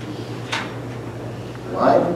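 Steady low hum through the microphone and sound system, with one sharp knock about a quarter of the way in. A short burst of voice comes near the end.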